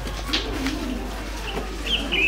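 A dove cooing in low, soft phrases, with two sharp clicks in the first second and a short high chirp near the end.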